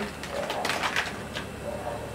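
Plastic markers clicking against each other in a ceramic bowl as one is picked out, a few sharp clicks. A bird cooing low in the background, once near the start and again near the end.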